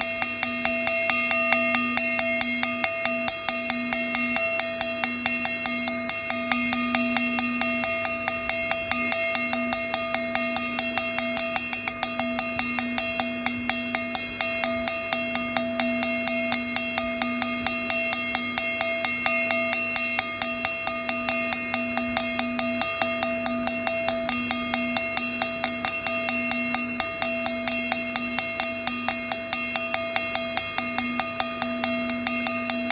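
Rhythmic metallic percussion, a cowbell-like clang struck about three times a second over sustained ringing tones. It is the game's music: it keeps playing without a break, so the players keep circling the chair.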